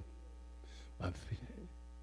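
Steady electrical mains hum in the sound system, low and even, with one short spoken word about a second in.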